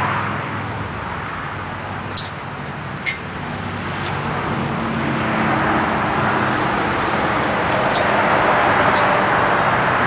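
Steady road-traffic and engine noise, growing a little louder in the second half, with a few light metallic clicks as the chain and brass padlock are fastened on the hitch.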